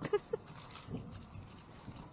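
A woman's laugh trailing off in a few short breaths near the start, then faint rustling and light knocks of plastic bags and mesh sacks of onions handled by gloved hands.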